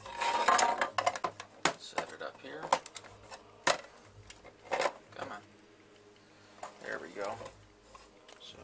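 Hard plastic toy starfighter and clear acrylic display stand being handled and set down on a wooden tabletop: a quick run of clicks, taps and scrapes, then single sharp knocks about four and five seconds in, and a short scraping near the end.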